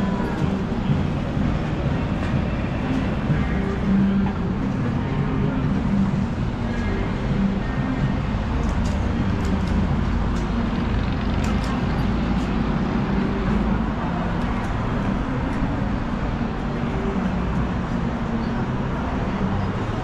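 City avenue ambience: a steady rumble of road traffic with the voices of passers-by, and music mixed in.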